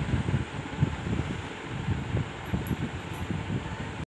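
Irregular low rumble under a steady hiss: air buffeting the microphone.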